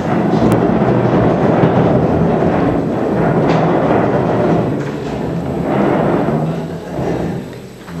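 Many chairs scraping and bumping on a hard polished floor as a roomful of people stand up together, a continuous loud rumbling clatter that eases off near the end.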